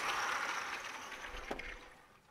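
A sliding lecture-hall blackboard panel being moved along its track: a rushing scrape that fades away, ending in a single knock about one and a half seconds in as the panel stops.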